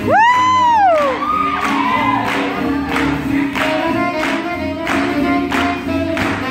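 Live swing jazz band playing an up-tempo tune with a steady beat. In the first second, a loud whoop from the crowd rises, holds and falls away.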